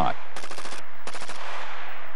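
C7 rifles firing: a quick run of sharp shots about a third of a second in, then a shorter run about a second in.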